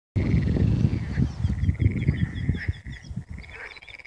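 A chorus of frogs calling from a pond, a steady pulsing croak with rapid repeated calls layered over it. Heavy low rumbling buffets, wind on the microphone, run under it and ease off after about two and a half seconds.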